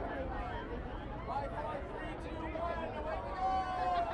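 Chatter of a large crowd of runners packed together, many voices overlapping, with one voice's long drawn-out shout falling in pitch near the end.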